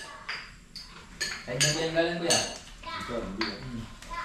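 Spoons and forks clinking and scraping against dinner plates during a meal, a string of separate sharp clinks. A voice speaks briefly in the middle.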